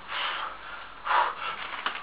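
A man's forceful breaths under heavy strain, two short sharp gasps about a second apart, as he lifts a 155 kg atlas stone from his lap.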